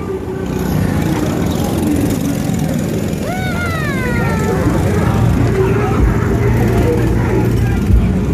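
Several go-kart engines running as karts drive past on the track, a steady droning mix. About three seconds in a voice calls out, rising and then falling in pitch.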